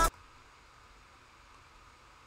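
Rap music stops suddenly as the track is paused, leaving near silence with a faint steady hiss.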